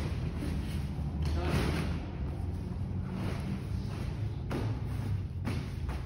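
Steady low hum of a large indoor hall with faint background voices, broken by a few soft thumps about a second in and twice near the end as the camper's canvas and frame are handled.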